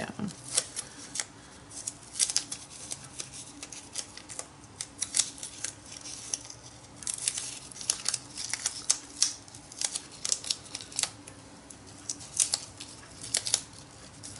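Paper masking tape being pinched and folded into small accordion bumps by hand, making irregular small crinkles and crackles.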